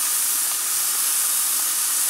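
Hamburger patties sizzling in a cast iron skillet on a propane camp stove: a steady hiss.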